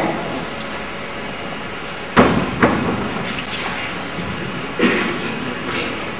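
A few knocks and thumps echoing in a large room, the loudest about two seconds in with a second right after it, then two softer ones near the end, as a person moves about at a whiteboard.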